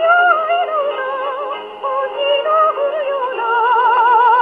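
A pre-war Japanese jazz song playing from a 78 rpm record on an acoustic gramophone with a home-made soundbox. Several melody lines with vibrato overlap, and the sound is thin, with no deep bass and no high treble.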